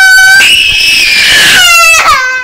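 A baby crying: one long, loud, high-pitched wail that jumps higher in pitch about half a second in and drops back near the end.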